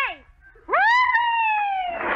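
A single high, drawn-out vocal cry. It starts about two-thirds of a second in, jumps up in pitch and then slides slowly downward for over a second, like a long comic "whooo".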